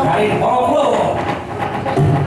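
A voice with a rhythmic clatter of knocks beneath it at a wayang kulit performance; the gamelan ensemble's ringing metallophones come in right at the end.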